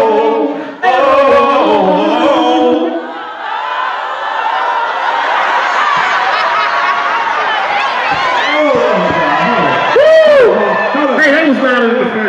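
Male singers harmonizing a cappella on a held "oh" into microphones for about three seconds, then the mixed shouting and cheering of a concert crowd, with one loud rising-and-falling whoop near the end.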